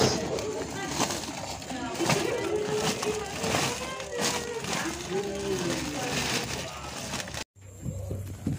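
A woven plastic sack rustling and crinkling as it is worked over a wasp nest, with indistinct voices alongside. The sound cuts out abruptly for a moment near the end.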